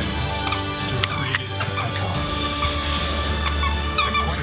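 Television commercial music playing steadily in the room, with short high squeaks from a plush squeaky toy being chewed by a puppy.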